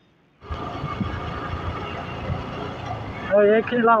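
Motorcycle riding along a road: a steady engine-and-wind rumble on the microphone that starts abruptly about half a second in.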